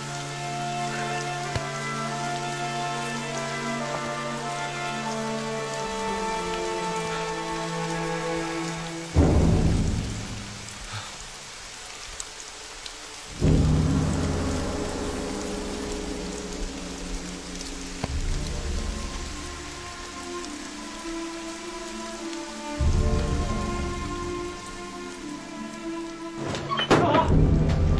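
Steady rain with a loud thunderclap about nine seconds in and another about four seconds later, each rumbling away over several seconds, and a weaker rumble near the end. A music score of long held notes plays under it.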